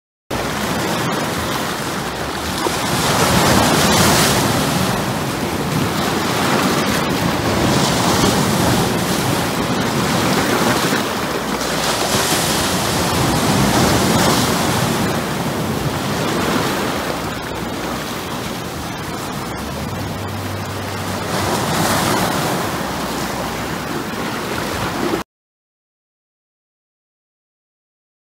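Ocean surf: waves washing and breaking, a steady rush that swells and eases every few seconds. It starts and stops abruptly.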